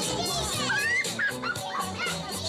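Children's high voices calling out over music with a steady beat, with one rising call about a second in.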